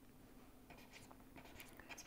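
Near silence with a few faint taps and scratches of a stylus writing on a pen tablet, over a faint steady hum.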